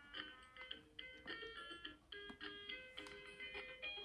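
VTech KidiSecrets jewellery box playing a faint electronic tune of short notes through its small speaker as its buttons are pressed, with a few light button clicks.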